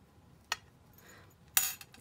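Two light metallic clinks from a small jingle bell being handled: a short tick about half a second in, then a brighter clink near the end that rings briefly.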